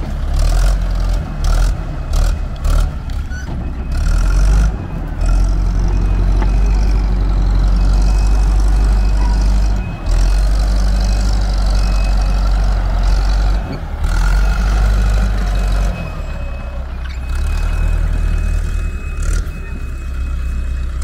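Fiat-Allis 8D crawler bulldozer's diesel engine running steadily, with a few sharp knocks in the first few seconds.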